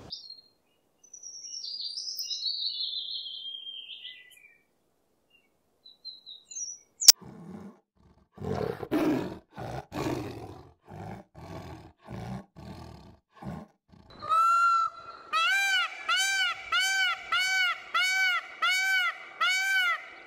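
A Eurasian blackbird sings a short whistled phrase that falls in pitch. After a sharp click, a tiger gives a series of about a dozen short roars. Then an Indian peacock calls: one long note, then a rapid even string of rising-and-falling calls, about two a second.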